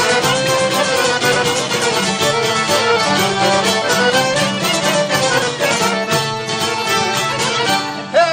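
Albanian folk music in an instrumental break with no singing: a lead melody over a fast, steady rhythmic accompaniment.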